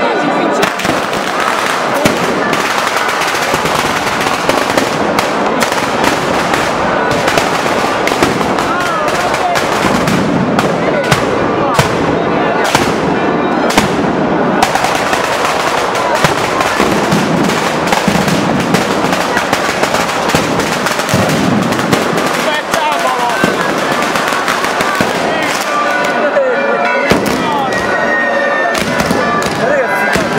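Batteria firecrackers strung over a crowded street, going off in a loud, continuous rapid crackle with no break, with crowd voices underneath.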